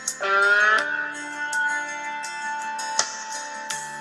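Instrumental country backing music with guitar, heard between sung lines. Near the start a short guitar phrase slides up a little in pitch, then a note is held.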